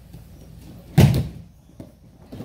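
Aikido partner taking a breakfall onto a padded mat: one loud thud about a second in, dying away quickly.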